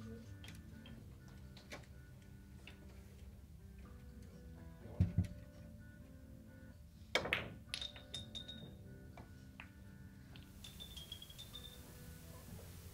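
Carom billiard shot on a five-pin table: a heavy knock about five seconds in, then a sharp ball-on-ball click just after seven seconds, followed by a few lighter clicks, one with a brief high ring, as the balls run on and strike the pins.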